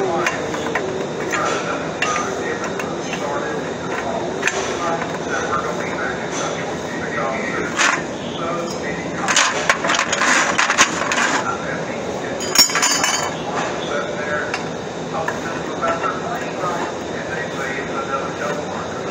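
Short pieces of square steel tubing clinking and scraping against a steel work table as they are handled and set down, with a cluster of louder clanks in the middle.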